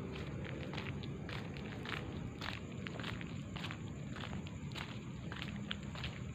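Footsteps of a person walking on a hard path, a few irregular steps a second, with handling noise from the phone that is filming.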